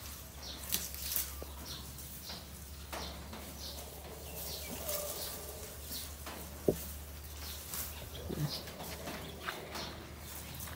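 Quiet outdoor background with faint, brief high-pitched chirps and rustles, and one sharp click a little before seven seconds in.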